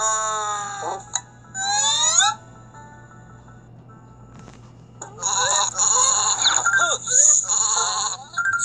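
Cartoon sound effects from an animated children's storybook: a falling tone in the first second and a quick rising glide about two seconds in. Then, from about five seconds in, a longer wavering cartoon sheep bleat.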